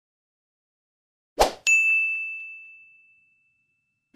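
Sound effects of an animated 'Like' button graphic: a quick swish about a second in, then at once a bright bell-like ding that rings one clear high tone and fades away over about a second and a half.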